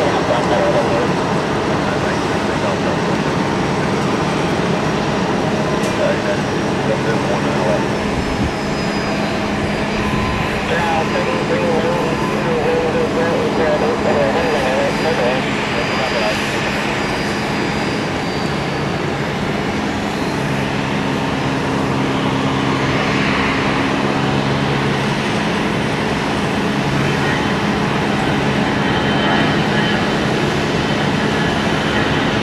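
Jet airliner engines running at taxi power: a steady rush of noise with a low hum and a faint high whine that falls slowly about ten seconds in.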